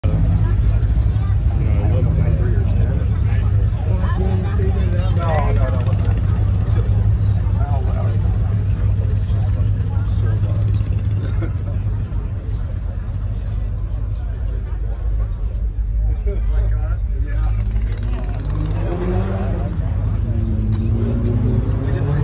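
Car engine idling with a steady low rumble, with people talking around it.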